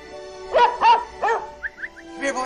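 Cartoon dog barking three times in quick succession over background music, followed by a few faint short squeaks.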